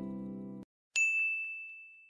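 The last held chord of the outro music cuts off suddenly, then after a brief silence a single high, bell-like ding strikes and slowly fades away.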